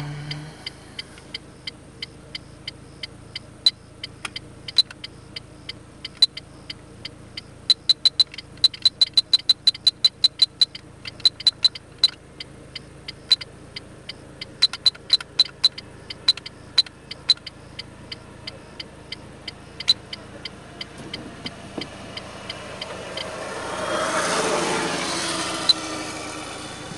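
Short, high-pitched electronic beeps from a Beltronics Vector FX2 performance meter as its buttons are pressed to step through the menus, coming one at a time and in quick runs. Near the end a rush of vehicle noise swells up and fades, over a low steady hum.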